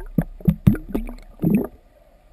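Air bubbles gurgling and popping, heard underwater: a quick run of short pops, several with a brief upward glide in pitch. The sound stops suddenly near the end.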